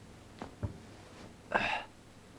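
Two soft clicks, then a single short breathy vocal sound from a person about one and a half seconds in.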